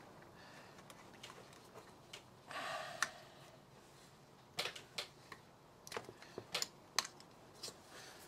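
Scattered sharp clicks and light knocks of hands fitting a wire and wooden clothes peg to the battery terminals of a battery-powered crimping tool, coming more often in the second half. A short scraping rustle comes about two and a half seconds in.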